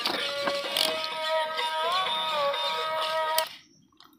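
Battery-powered toy walking robot playing a tinny electronic tune of steady beeping notes that step up and down in pitch, with a few plastic clicks. The tune cuts off suddenly about three and a half seconds in.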